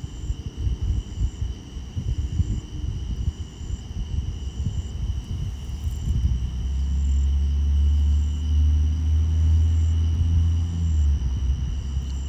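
A low, engine-like rumble that builds about halfway through, stays loud for several seconds, then drops off near the end, over crickets chirping steadily.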